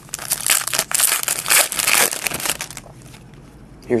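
Foil wrapper of a trading-card pack being torn open and crinkled by hand, a dense crackling for about the first two and a half seconds, then quieter handling.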